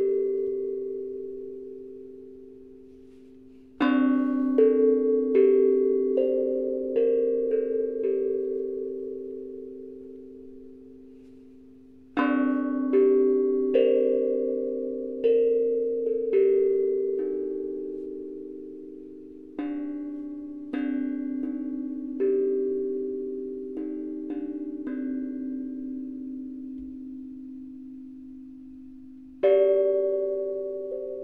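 Handmade steel tongue drum (tank drum) being played: short runs of struck single notes that ring on and overlap, each run left to fade out over several seconds before the next begins.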